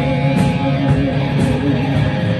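Live rock band playing an instrumental passage: electric guitars over bass and drums, with no vocals.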